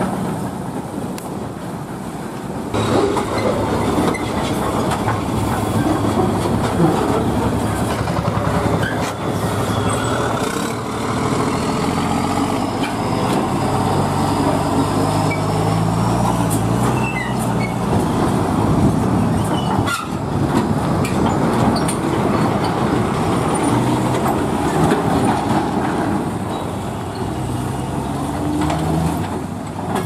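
Heavy loaded diesel lorries driving slowly past one after another on a rough road, their engines running with a low drone and their bodies giving many short knocks and rattles.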